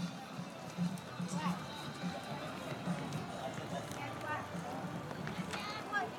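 Indistinct voices of people talking nearby, in short snatches, over faint background music.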